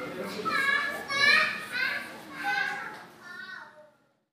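High-pitched children's voices calling out and chattering in a room, in several short bursts that fade and cut off just before the end.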